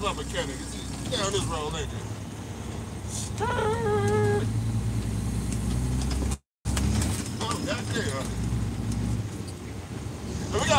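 Semi-truck diesel engine running steadily, heard from inside the cab, with a man's voice murmuring and holding one drawn-out sung note a few seconds in. The sound cuts out completely for a moment past the middle.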